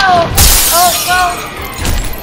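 A loud glass-shattering crash about half a second in, its bright crunch fading over about half a second: a sound effect laid over the fall onto the mat. Short shouts follow, then a second, duller thud near the end, over music.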